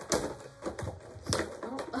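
Clicks and knocks of a cardboard toy box being handled and opened, with a sharp knock late on as two small plastic figures topple over on the table.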